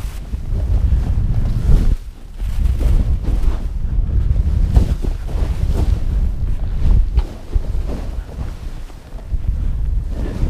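Wind buffeting the camera microphone as a snowboard rides fast through deep powder, with the board's hiss and spray coming in surges that ease off briefly about two seconds in and again near the end.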